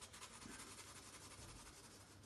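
Graphite pencil scratching faintly on sketchbook paper in quick, repeated strokes.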